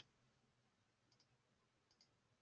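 Near silence, with two very faint computer-mouse clicks, about a second in and near the end.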